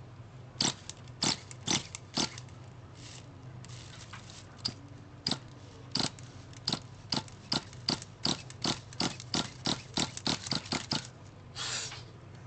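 Pull-starter of an HPI RS4 Evo 3+ nitro RC car yanked over and over in short, sharp pulls that quicken to two or three a second near the end. The glow engine never fires: a nitro car that will not start on its factory tuning.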